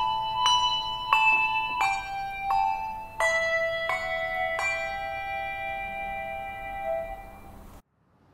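Handbells ringing a slow melody, one clear struck note after another with no bass under them. The last note rings on and fades, then the sound cuts off just before the end.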